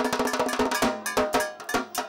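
Dhak, a Bengali barrel drum slung from the shoulder, beaten with thin sticks in a fast run of strokes. The skin head rings with a steady tone under the strokes, which thin out a little after the middle.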